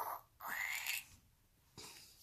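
A small plastic lotion bottle being squeezed: a short click, then a brief airy squirt with a faint rising whistle as the lotion and air are pushed out.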